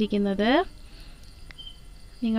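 Faint, high-pitched chirring of crickets in the background, heard in a pause between spoken phrases, with a single faint tick about a second and a half in.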